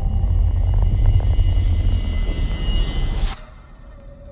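Film sound effect of a spacecraft flying past: a deep, heavy rumble with a rising hiss that swells over the last second or so and then cuts off suddenly, leaving only a faint low rumble.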